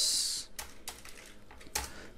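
Computer keyboard typing: a handful of separate keystrokes clicking at an uneven pace.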